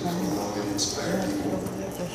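A man speaking into a microphone over a PA system in a large hall: speech only.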